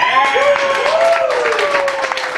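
Audience applauding, with several people whooping in long held cheers over the clapping.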